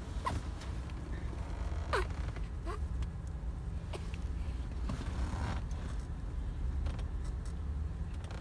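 Steady low rumble of a GMC vehicle's cabin, with a few short squeaks that fall in pitch, one just after the start and two around two to three seconds in.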